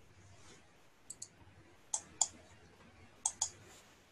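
Computer mouse button clicks, three pairs of sharp clicks about a second apart, against a quiet room.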